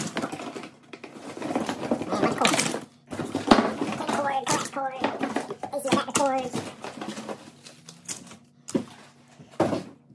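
Hard plastic and household items knocking and clattering as they are handled and dropped into a plastic storage tote, with some indistinct voice sounds in between.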